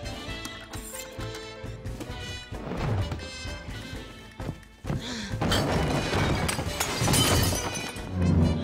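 Film soundtrack music with crashing sound effects over it: a crash about three seconds in, then a louder stretch of crashing and shattering noise from about five seconds in until near the end.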